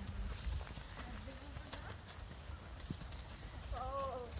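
Hoofbeats of a ridden horse walking on grass and dirt, soft and irregular. A brief voice comes in near the end.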